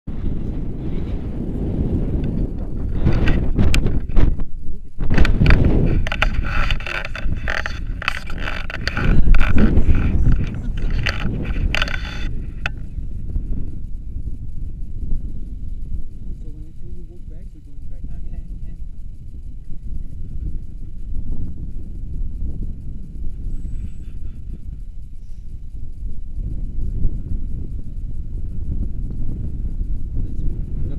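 Wind buffeting an action camera's microphone, a steady low rumble, with indistinct voices. For several seconds in the first part there is loud crackling and rustling, which then stops, leaving the rumble.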